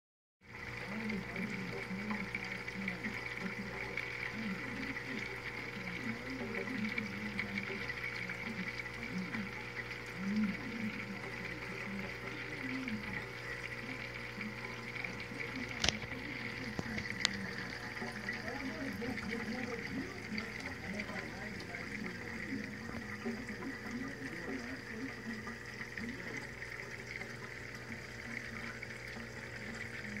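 Water churning and splashing in a freshwater aquarium sump, where the flow keeps a bed of K1 filter media tumbling, over a steady hum from the pump. Two sharp clicks come a little past the middle.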